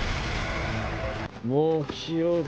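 Anime episode soundtrack: a steady rumbling rush of a dramatic sound effect for about the first second, cutting off, then a male anime character's voice speaking near the end.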